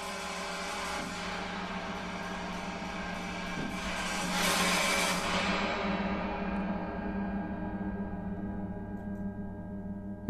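Sampled aleatoric orchestral percussion from the Sonokinetic Espressivo library, tom-tom played on the edge and snare sticks, triggered from a keyboard: a sustained, ringing texture that swells to its loudest about halfway through and then fades.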